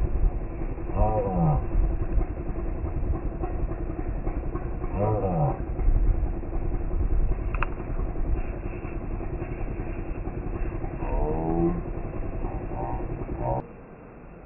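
Steady low rumble of motor-vehicle engines, with an engine note that falls in pitch three times, like vehicles passing. It drops away suddenly near the end.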